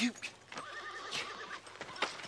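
A horse whinnies: one wavering, fluttering call of about a second, starting about half a second in.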